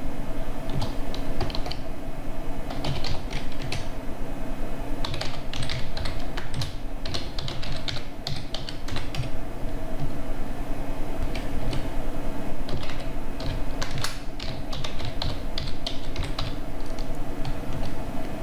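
Computer keyboard typing: keys struck in quick irregular runs with short pauses, over a steady low hum.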